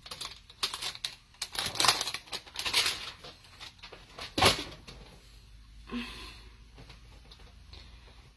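Plastic bag crinkling and rustling in short crackles as vegetables are shaken out of it, then a single sharp thump a little past the middle.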